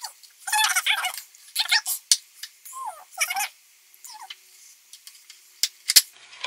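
A woman's short wordless vocal sounds, with a few light plastic clicks and taps from a phone case and screen protector being pressed onto a phone.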